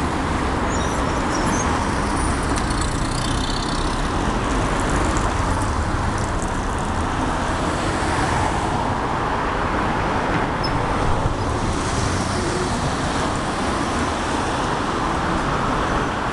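City street traffic: cars driving past, a steady rush of tyres and engines.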